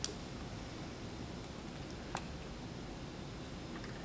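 Two faint, sharp clicks about two seconds apart over a steady low hiss. They come from an Allen key on the Allen screws of a Brother RH-9800 buttonhole sewing machine as the screws are tightened to fix the needle bar height.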